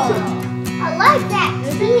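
Children's voices chattering over steady background music.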